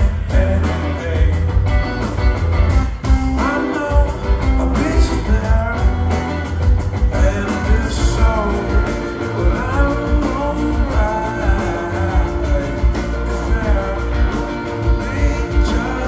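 A live band playing a song: electric guitar, bass guitar, keyboard and drums, with a man singing lead vocals from about four seconds in. A heavy, steady low end of bass and kick drum runs under it.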